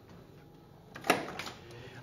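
Car door latch of a 1969 Chevrolet Camaro clicking open once about halfway through, followed by a brief softer sound as the door swings out. Before the click, only quiet room tone.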